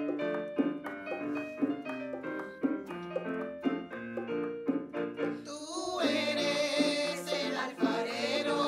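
A piano playing the introduction of the entrance hymn at Mass, in separate ringing notes; about five and a half seconds in, the choir comes in singing over it.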